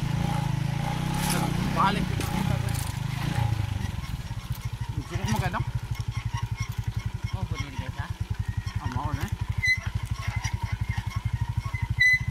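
Small motorcycle engine running as it carries riders along a dirt track. About four seconds in it settles into an even, rapid putter at low throttle.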